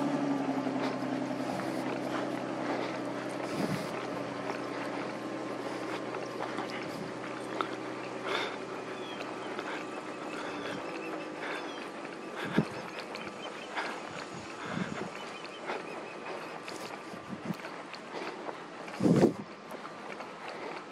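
A steady engine hum that fades away a little past halfway, with scattered soft thumps, the loudest shortly before the end.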